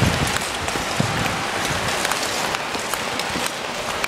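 Ice skate blades scraping and hissing on rink ice as skaters stroke along, a steady crackly rushing noise with a few knocks, the clearest at the start and about a second in.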